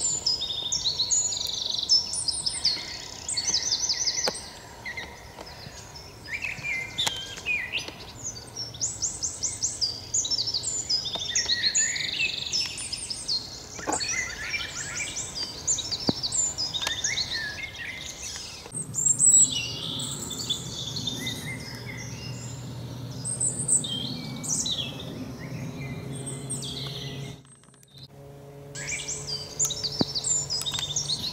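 Several songbirds singing at once, a spring chorus of overlapping trills, warbles and chirps from different birds.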